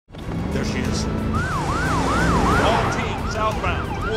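Emergency vehicle sirens rising and falling about twice a second over the low rumble of car engines; the siren starts about a second in, and a second siren at a different pitch joins near the end.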